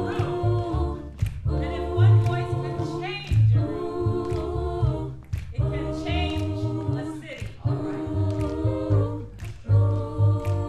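Mixed choir singing a slow soul ballad in several-part harmony, with sustained chords, over a deep bass line and a sharp beat about once a second.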